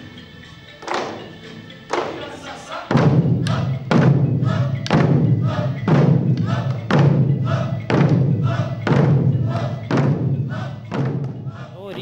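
Large Okinawan eisa-style taiko barrel drums struck with sticks: two single beats in the first two seconds, then the group drumming together in a steady rhythm of about two strokes a second, each with a deep boom.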